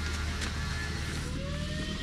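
A steady low motor hum, with a faint tone that rises and then falls in pitch in the second half.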